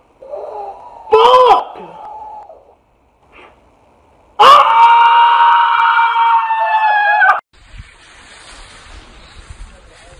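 Short excited exclamations, then a man's loud scream of amazement held on one pitch for about three seconds that cuts off abruptly. After it comes a faint steady outdoor hiss.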